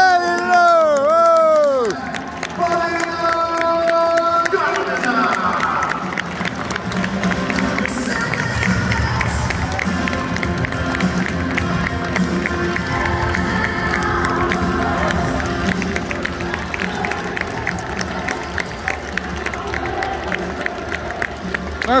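Arena public-address sound: an announcer's long, drawn-out voice in the first two seconds, then loud music with a beat over the speakers, mixed with crowd noise and some cheering and clapping.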